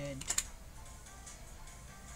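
Two quick computer-keyboard clicks just after the start, then faint background music.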